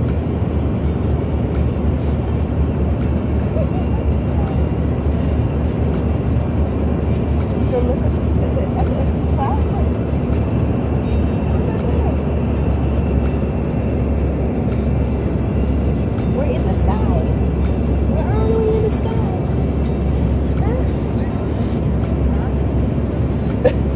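Steady, loud low rumble of road noise inside a moving car, with faint voices beneath it.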